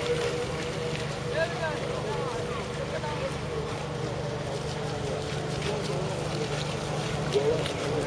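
Several radio-controlled model racing boats running around a pond, their small electric motors whining steadily, the pitch wavering and gliding as the throttles change.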